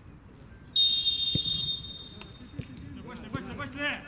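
Referee's whistle blown once for kickoff: a single shrill blast that starts sharply about a second in, holds for about a second and trails off. A dull thud of the ball being kicked comes during the blast, and players' shouts follow near the end.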